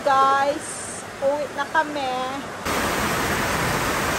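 Heavy rain pouring down steadily, coming in abruptly about two and a half seconds in after a cut. Before it there are short, high-pitched vocal sounds.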